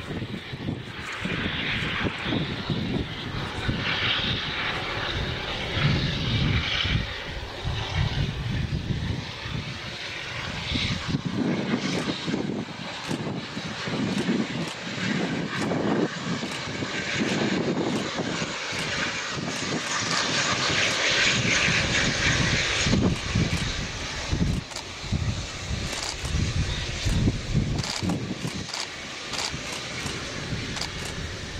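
GWR Castle Class four-cylinder 4-6-0 steam locomotive working hard as it approaches with a train of coaches, its exhaust beats coming in a continuous rhythmic chuffing.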